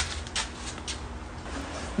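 A few faint, short clicks in the first second, then quiet handling noise over a steady low hum.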